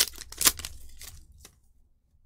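Foil wrapper of a Pokémon card booster pack crinkling and crackling as the cards are pulled out of it, with two sharp crackles in the first half second, dying away after about a second and a half.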